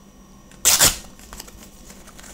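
Hands handling a paper code card: one short hissing swish a little over half a second in, with a couple of faint ticks after it.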